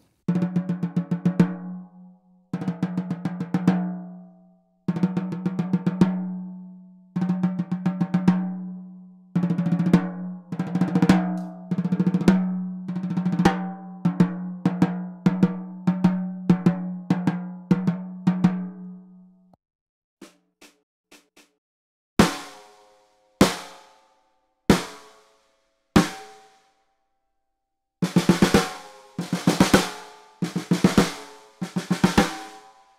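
Ludwig Acro metal-shell snare drums played with sticks in single strokes. For about two-thirds of the time there are runs of quick, even strokes on one drum with a steady low ring under them. After a short pause come four separate hits a little over a second apart without that ring, then quick strokes again near the end.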